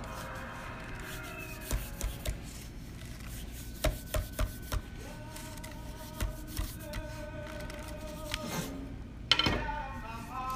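Light scattered taps and rubbing from hands smoothing a sheet of fondant around a cake, over faint background music with held notes.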